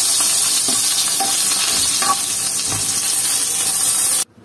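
Eggplant (brinjal) pieces sizzling steadily as they fry in hot oil in a nonstick pan, with a few light touches of a metal spoon as they are turned.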